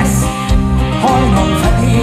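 Live band music through a concert PA: a pop-rock song with a sung vocal over a steady beat.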